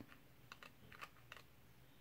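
Near silence, with a few faint, short clicks spread across the two seconds.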